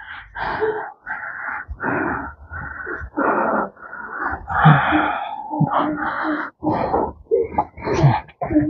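A person's heavy, rasping, wheezing breaths, coming in quick noisy gasps about twice a second.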